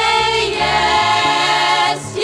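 A women's vocal group singing one sustained chord in close harmony over a moving bass part, played back from a digitized 1976 vinyl album.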